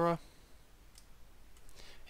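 A single faint computer-mouse click about a second in, after a man's voice trails off at the start; otherwise quiet room tone.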